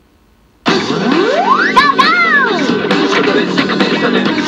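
Pachinko machine's electronic sound effects and music: a brief silence, then a sudden start with a rising whistle-like glide and two bouncing arcs of tone, running straight into upbeat music with many quick clicks, marking the start of the jackpot (big-win) round.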